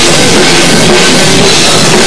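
Live rock band playing loud: drum kit with cymbals and electric guitars together, at a steady, unbroken level.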